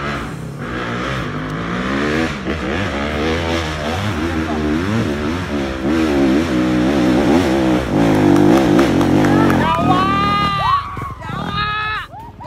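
Dirt bike engine revving hard on a steep uphill climb, its pitch rising and falling with the throttle and growing louder, until it drops away about ten seconds in. Raised human voices follow near the end.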